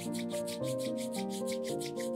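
Two pairs of palms rubbed briskly together to warm them, a rapid, even swishing of hands, over background music with sustained tones.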